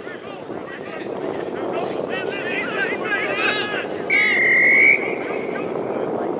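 Many voices chattering and calling out in the background, then about four seconds in a single referee's whistle blast lasting nearly a second, the loudest sound.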